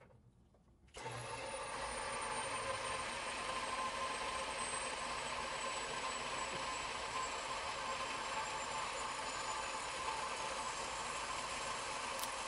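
Jet combination metal-cutting bandsaw switched on about a second in; its electric motor and blade then run steadily, with a faint high whine that drifts slowly lower in pitch.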